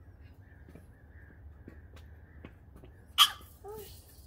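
French bulldog puppy giving one short, loud bark about three seconds in, followed by a brief whine.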